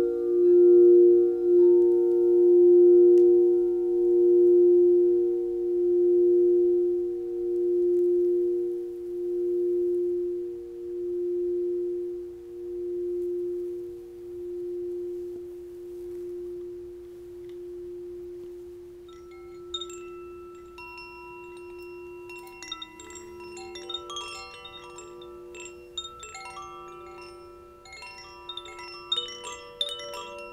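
A crystal singing bowl rings with one steady tone and a slow wavering beat, fading away over about twenty seconds. From about twenty seconds in, hand-held bamboo chimes are shaken, tinkling many bright overlapping notes over the bowl's fading hum.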